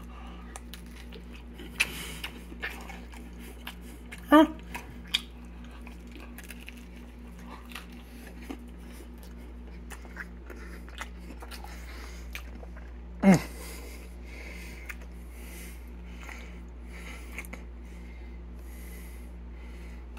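A man chewing a bite of pizza close to the microphone, with faint wet mouth clicks, over a steady low hum. A short voiced "huh" about four seconds in and another brief vocal sound about thirteen seconds in.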